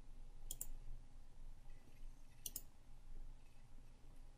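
Two pairs of quick, faint mouse-button clicks, about two seconds apart, over low room hum.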